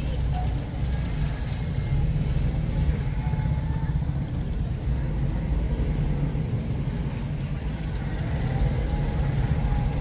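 Busy street ambience dominated by the steady low rumble of motorcycle engines running close by.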